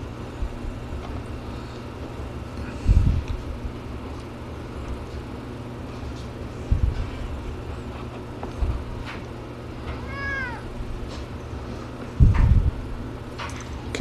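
A cat meows once, a short call that rises and falls in pitch, about ten seconds in. Dull low thumps come about three seconds in and again near the end, over a steady low hum.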